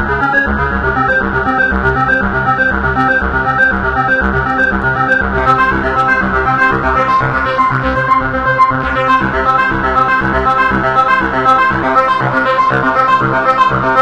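Korg Nu:Tekt NTS-1 digital synthesizer playing a loud, continuous run of rapid notes from its arpeggiator while its filter settings are turned.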